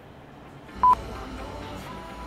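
A single short electronic beep at one steady pitch, about a second in, over a low steady background noise.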